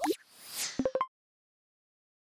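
Logo-animation sound effect: a pop that slides down in pitch, a short whoosh, then three quick blips stepping up in pitch. It is all over in about a second.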